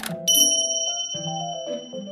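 A bright, bell-like ding sound effect struck about a quarter second in and ringing on as it slowly fades, over light background music with changing chords, as an animated logo appears.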